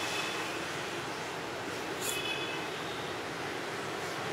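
Steady city street traffic noise from passing motorbikes and cars, with a brief faint high ring about two seconds in.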